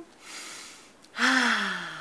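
A woman takes a soft breath in, then lets out a loud, breathy "ahh" sigh about a second later, its pitch falling as it fades.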